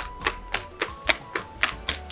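Background music: a quick, even beat of sharp ticks, about four a second, over faint held notes.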